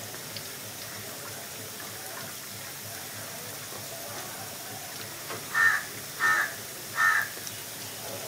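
Sugar syrup boiling in a large iron kadai, a steady bubbling hiss. About five and a half seconds in, a bird calls loudly three times in quick succession.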